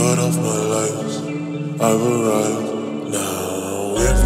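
Slow music with sustained chords and long held notes, moving to new notes about two seconds in.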